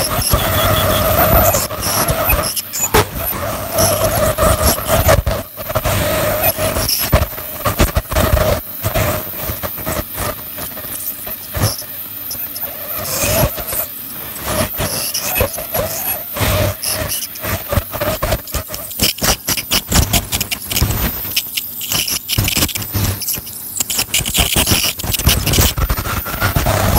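Ultrasonic dental scaler working along a dog's teeth during a cleaning: a steady high squeal at first, then dense scraping and crackling as the tip works the tartar off.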